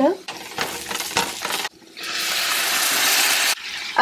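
Chopped onions and ground spices being stirred in a nonstick pan, with clicks and scrapes of the utensil. After a sudden break about two seconds in comes a steady, loud sizzle of onion-tomato masala frying in oil, lasting about a second and a half.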